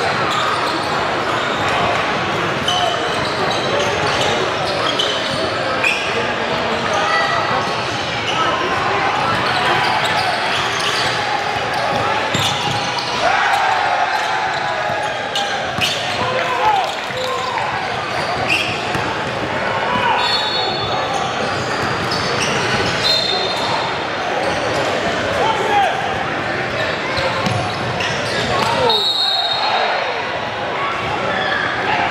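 Basketball game in a large, echoing gym: a crowd of spectators and players talking and calling out, with a basketball bouncing on the hardwood court throughout. Short high whistle-like tones sound a few times in the second half, the clearest near the end as play stops and players line up at the lane.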